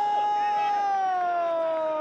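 Sports commentator's long, drawn-out shout on one held vowel, its pitch sagging slowly as it goes, reacting to a near miss in front of goal.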